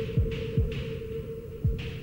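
Tense underscore of a steady low drone held on one note, with deep thuds that drop in pitch, about two a second, like a pulsing heartbeat.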